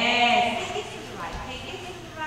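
A person's voice calling out a drawn-out word, its pitch rising and falling over about half a second at the start, then quieter voice sounds.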